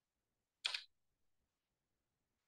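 A single short click, a little under a second in, as a computer slide presentation is advanced; the rest is near silence.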